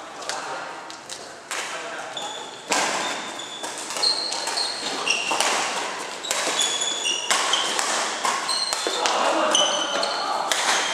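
Badminton rally echoing in a large hall: sharp cracks of rackets striking the shuttlecock, starting about three seconds in, with shoes squeaking in short high chirps on the court floor and voices in the background.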